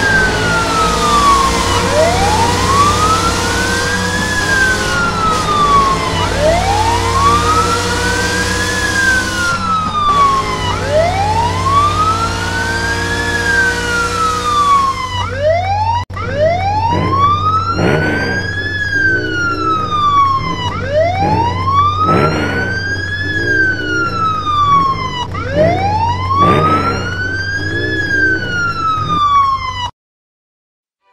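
Police car siren wailing in slow cycles, each rising and then falling over about four and a half seconds, over a low steady hum. A brief break comes about halfway, after which the siren sounds cleaner.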